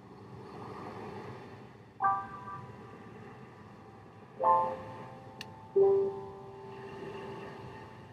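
Slow, sparse piano music: three soft chords struck about two, four and a half and six seconds in, each left to ring and fade.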